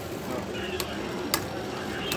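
Two Beyblade Burst tops spinning on a plastic stadium floor with a steady scraping whir, and two sharp clicks about half a second apart as the tops strike each other.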